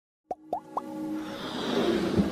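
Animated logo intro sound: three quick plopping pops, each sliding up in pitch, about a quarter second apart, then a musical swell that builds steadily louder.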